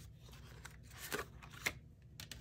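Paper cards being handled and set down on a desk, quiet rustling with two small taps, one a little after a second in and one near the end.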